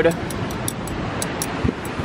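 Chicken burgers and skewers sizzling on a gas barbecue grill: a steady hiss with small irregular crackles, and one short low knock near the end.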